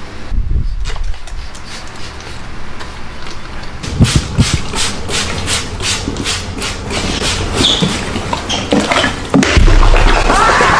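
A hand spray bottle squirting water onto hair in quick repeated pumps, about three short hisses a second, followed by a heavy thump near the end.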